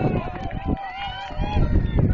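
Spectators' voices calling out, over low thumps and rumble from the camera being handled and carried on foot.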